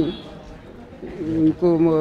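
Speech only: a man speaking, with a pause of about a second before he goes on.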